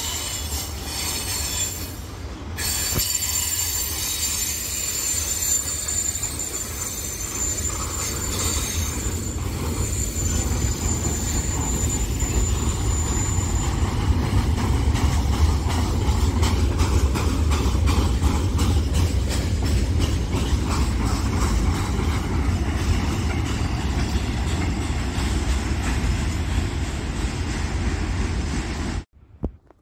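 Freight train wagons rolling past on the rails: the wheels give a high-pitched squeal through the first half. After that come a steady rumble and rapid clicks of wheels passing over rail joints, growing louder after the middle.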